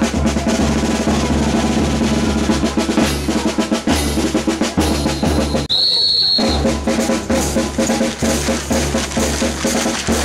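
Street band of bass drum and cymbals playing a steady marching beat. About halfway through, a single shrill whistle blast lasts roughly a second.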